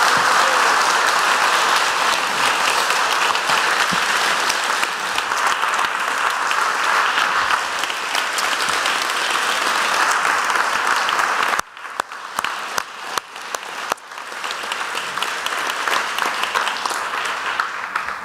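Congregation applauding, a dense patter of many hands clapping. About twelve seconds in it thins abruptly to scattered single claps for a couple of seconds, then fills in again.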